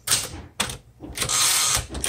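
Manual typewriter (1969 Smith Corona Classic 12): two sharp clacks, then about a second in the carriage is pushed back across by the return lever, a rattling slide of under a second that stops abruptly.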